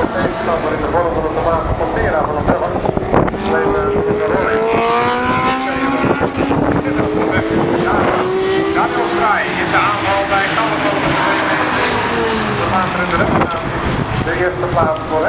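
Historic GT and touring race cars' engines running hard past the track, several cars at once. About four seconds in, one engine's note climbs steadily as it accelerates; after that other engine notes cross and fall away as cars go by.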